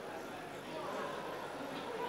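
Faint, indistinct voices and murmur in a large hall, with no clear words.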